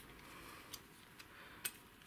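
Three faint, sharp metallic clicks from the small steel parts and spring of an AKM flash hider being handled and pulled apart by hand, the loudest about one and a half seconds in.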